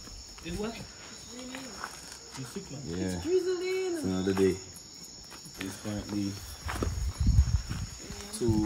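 Crickets trilling steadily at night under quiet talk from people close by, with a few low thumps about seven seconds in.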